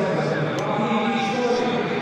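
A man's voice with no clear words, over steady stadium background noise.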